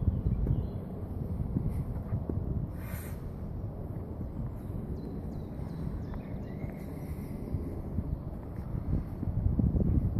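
Wind buffeting the microphone: an uneven low rumble throughout, with a brief hiss about three seconds in and a few faint chirps above it.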